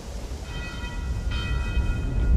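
Soundtrack swell: a low rumble growing steadily louder under several sustained high ringing tones, which come in about half a second in and grow stronger shortly after the middle.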